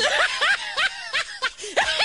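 Laughter: a quick run of short laughs, each rising and falling in pitch.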